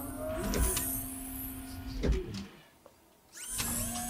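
Electric motor whirring of a cartoon medical machine: a steady mechanical hum with a slowly gliding tone that cuts out for about half a second near the three-second mark and then starts again. A short laugh comes about two seconds in.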